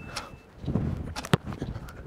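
A footballer's running steps and one sharp kick of a football, a single crisp strike a little over a second in.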